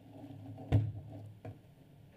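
A single sharp knock about three-quarters of a second in, followed by a fainter click, as the inspection device and its cable are handled and set down on the stand.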